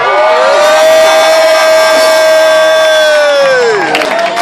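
One voice holding a long, loud shouted note: it rises at the start, stays steady for about three and a half seconds, then drops away near the end.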